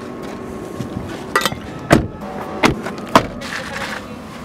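Car doors and hatch handled and shut as people get in: four sharp knocks and thuds, the loudest about two seconds in.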